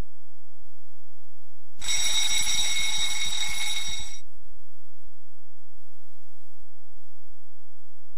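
A bell rung rapidly for about two seconds, a quick run of clapper strikes with a bright, sustained ring, used to call the room to order before the service.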